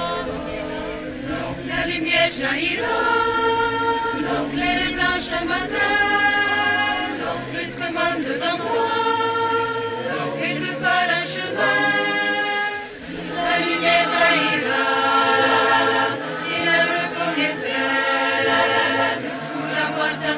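A choir singing in parts without accompaniment, holding chords of about a second each, with a short break between phrases about thirteen seconds in.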